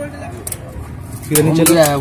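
A man's low voice, starting about two-thirds of the way in, over faint background noise.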